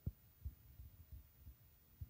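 Near silence broken by five faint, short low thumps, roughly three a second.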